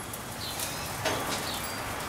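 Outdoor ambience: a steady hiss with a few short, faint bird chirps.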